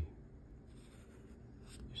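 Faint felt-tip strokes of a Sharpie fine-point marker drawing on paper, starting a little under a second in.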